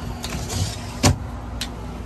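A sharp knock about a second in, with lighter clicks and a rustle around it, over a steady hum from the trailer's running window air conditioner.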